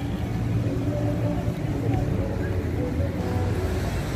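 Outdoor city ambience: a steady low rumble with indistinct voices of people around.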